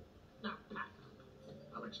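Film dialogue heard through a TV speaker: a man's short spoken line about half a second in, and the start of his next line near the end.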